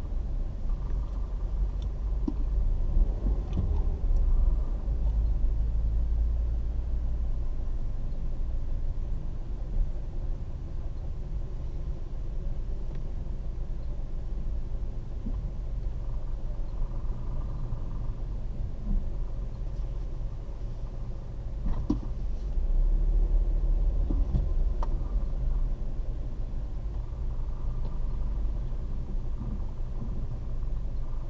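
Steady low rumble of a car's engine and road noise heard from inside the cabin as it creeps along in slow traffic, swelling a little a few seconds in and again past the twenty-second mark.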